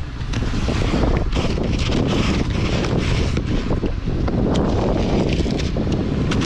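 Wind blowing hard across the microphone in a snowstorm, a steady low rumble, with several short strokes of a long-handled snow brush and ice scraper scraping at snow and ice frozen onto a car's windshield.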